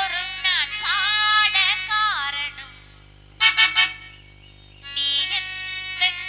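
A high voice singing a Tamil stage-drama song over a steady harmonium drone, breaking off about two and a half seconds in. After a short lull comes a brief loud burst of steady reedy notes, then held harmonium notes until the singing starts again.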